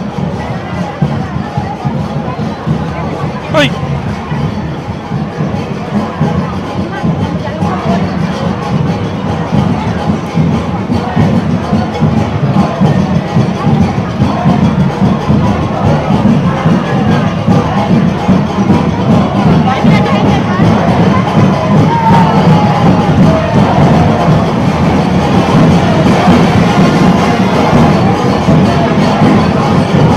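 Cuban street conga band playing a dense, driving percussion rhythm, with crowd voices and cheering around it, growing steadily louder. A single sharp bang about three and a half seconds in.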